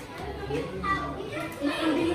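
Children's voices chattering and calling out in a room, with other people talking in the background.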